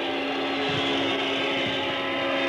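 Steady crowd noise from a packed basketball arena, an even wash of many voices, with a steady low hum held underneath.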